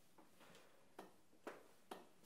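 Near silence: quiet room tone with a few faint, short clicks about half a second apart.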